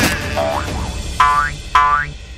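Cartoon sound effects: a sharp crash at the start, a short rising boing about half a second in, then two short buzzy blasts about half a second apart.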